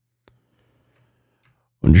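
Near silence with a faint low hum, broken once by a single faint click of a computer key about a quarter of a second in.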